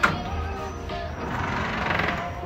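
Background music with held melodic notes, opening on a short sharp click.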